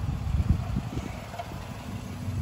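Subaru Outback's flat-four engine running at low revs as the car creeps in close, a steady low rumble.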